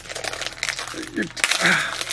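Plastic wrappers of Kool-Aid gum packs crinkling as they are handled, with many short crackles. Brief vocal sounds come a little over a second in.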